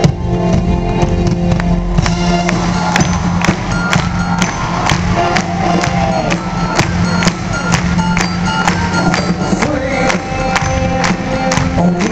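Live band music from a concert stage, recorded from the audience: sustained chords, with a steady percussion beat of about two strikes a second coming in about two seconds in.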